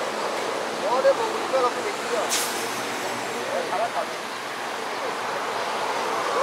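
Faint voices of people talking in short bursts over a steady outdoor background hiss, with one sharp click a little over two seconds in.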